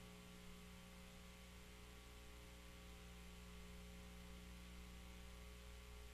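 Near silence: a steady electrical mains hum with faint hiss.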